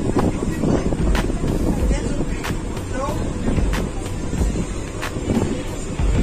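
Low steady rumble of a dive boat's engine running, with people talking in the background and occasional knocks and clicks.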